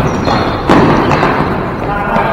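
Ball hockey play in a large gym: players' voices and the knock and clatter of sticks and ball on the floor, with one sharp impact about two-thirds of a second in.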